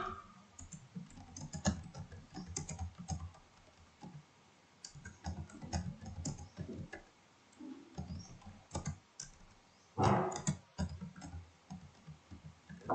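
Typing on a computer keyboard: irregular bursts of key clicks with a pause of about a second and a half near the four-second mark, and one louder burst of noise about ten seconds in.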